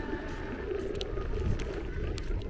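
Electric scooter rolling over boardwalk decking: a steady low rumble from the wheels on the planks, with a few sharp clicks about a second in.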